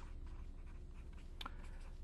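Felt-tip marker writing on paper: faint scratching of the tip across the sheet as words are written out, with one sharper tick partway through.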